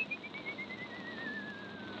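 A man's long whistle that glides slowly down in pitch with a regular wavering, over the steady hiss of an old record. It is a carter's whistle to the oxen within the song.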